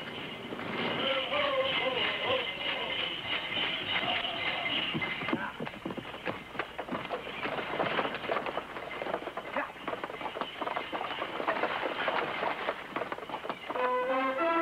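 Group voices chanting for the first few seconds, then a stagecoach's horse team galloping, a dense run of hoofbeats with the coach rattling along.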